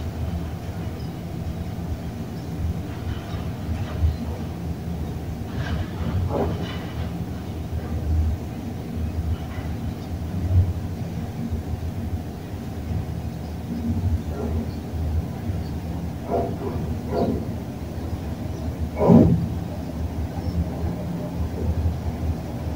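Elevator car running downward at speed, with a steady low rumble and rattle. A few brief clatters or squeaks cut in, the loudest a few seconds before the end.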